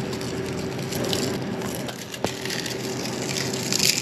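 Crispy arañitas (shredded fried plantain) crackling and crunching as they are crumbled by hand and scattered over a pizza, with a sharp click a little after two seconds and a steady low hum underneath.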